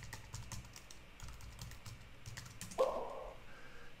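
Computer keyboard keys clicking in a quick irregular run as a message is entered. About three seconds in there is one brief, louder muffled sound.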